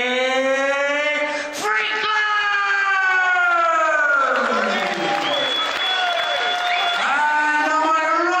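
Ring announcer's amplified voice over the arena PA, stretching syllables into three long drawn-out calls. The middle call slides steadily down in pitch.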